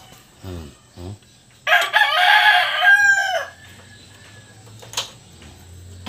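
A rooster crowing once: one loud call of about a second and a half that drops in pitch at the end. A single sharp click follows a few seconds later.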